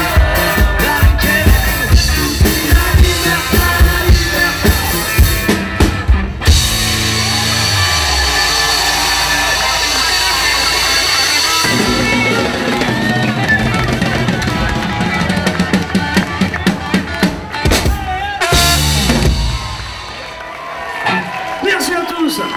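Live band with drum kit, electric guitar, bass and saxophone playing to the end of a song: the drums drive steadily until about six seconds in, the band then holds long notes, picks up the rhythm again and closes on a final hit, after which the sound drops away near the end.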